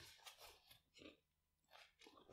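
Near silence, with a few faint soft rustles as over-ear headphones are settled onto the head.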